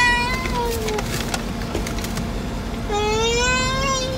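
A young child whining in long, drawn-out high-pitched cries, twice: the first trails off with a falling pitch about a second in, the second starts near the end.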